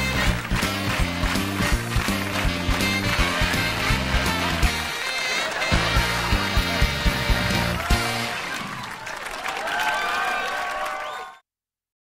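Upbeat TV-show closing theme music, with a stepping bass line under regular drum hits. The bass drops out briefly about halfway through and again for the last few seconds. The music cuts off abruptly just before the end.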